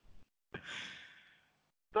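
A man breathing out audibly, like a sigh, close to the microphone: a soft breath about a second long that fades away.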